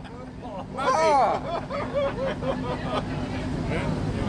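Men laughing and exclaiming in delight: a rising-and-falling whoop about a second in, then a run of short laughs, with crowd chatter behind.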